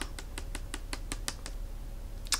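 Pages of a book flicked past a thumb, a quick even run of about ten light clicks, about seven a second, that stops about a second and a half in.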